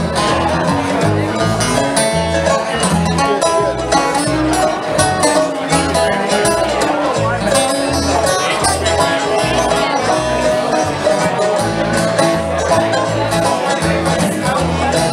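Live bluegrass band playing an instrumental passage: banjo, mandolin, acoustic guitar and upright bass, with the bass plucking a steady rhythmic pulse under the picked strings.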